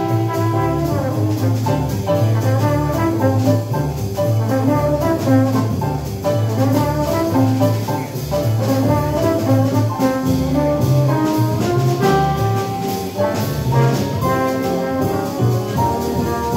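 Small live jazz combo playing: trombone carrying a melodic line over piano, walking double bass, electric guitar and drum kit with cymbals.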